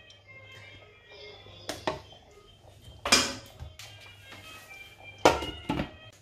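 Faint background music with a few sharp knocks, about two, three and five seconds in.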